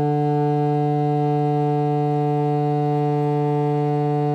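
Contrabassoon holding one long, steady note: the D in its tenor range, fingered with the top right-hand key.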